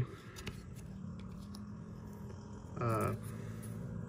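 Faint handling sounds of 1996 Pinnacle baseball cards being slid from the back of the stack to the front in the hands: light ticks and rustles over a low steady hum. A brief murmured voice comes about three seconds in.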